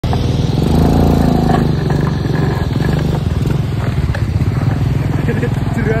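Motorcycle engine running steadily while driving a motorbike-powered becak (passenger tricycle cart) along the road.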